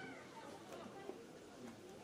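Faint, distant shouts and calls of players on a football pitch, with a short high-pitched call right at the start.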